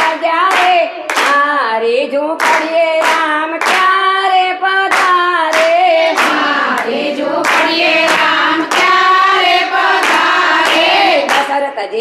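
A group of women singing a Gujarati devotional kirtan together, keeping time with steady hand-clapping at about two claps a second.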